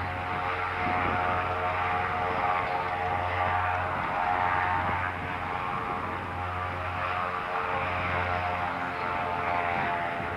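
The Goodyear blimp's twin propeller engines running in a steady drone as the airship lifts off and climbs away.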